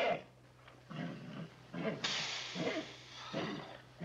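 A mare in labour with a breech foal, groaning several times and giving one long breathy blow about two seconds in.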